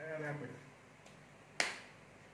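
A man's voice briefly, then a single sharp click about a second and a half in, the loudest sound here.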